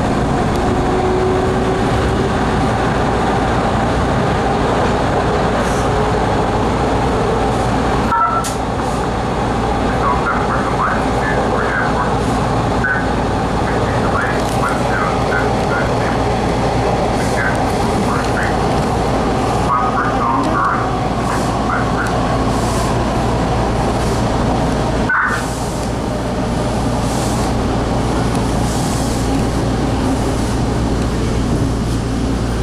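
Bombardier T1 subway train running through a tunnel, heard from inside the car: a steady, loud rumble of wheels on rail and running gear. There are two brief dips in the noise, one about a third of the way in and one near the end.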